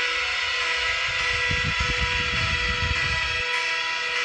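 Background music of sustained, held chords, with a low rumble joining about a second and a half in and dropping away shortly before the end.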